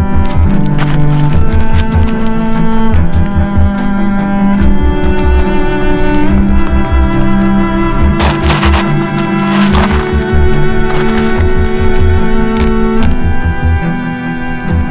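Background music: long, low bowed-string notes that change every second or two over a pulsing bass beat.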